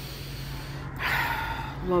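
A woman's sharp inhaled breath, an airy gasp about a second in, over a steady low hum.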